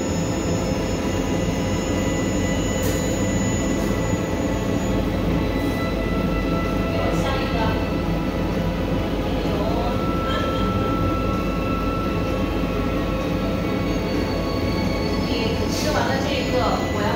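Steady rumble and hum of a moving vehicle heard from inside, with faint voices in the background.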